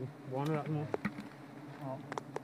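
A mass of wild honeybees buzzing in a steady low hum on their open comb as it is prodded with a stick, with a few sharp clicks.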